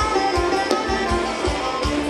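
Thai ramwong dance music from a live band, with sustained melody lines over a steady bass-drum beat of about three beats a second.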